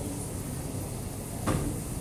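A single thud about one and a half seconds in, from an athlete's feet landing during repeated box jumps at a wooden plyo box.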